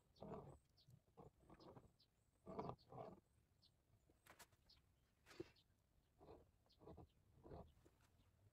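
Near silence, broken by about a dozen faint, short scuffing sounds.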